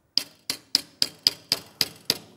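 Small hammer striking annealed copper against the edge of a metal forming block: a quick run of about seven sharp metallic taps, three or four a second, each with a brief bright ring.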